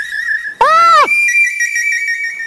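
A steady high-pitched whistle-like electronic tone with a slight wobble. A short, high, swooping voice-like call rises and falls about half a second in. After it, two steady high tones sound together.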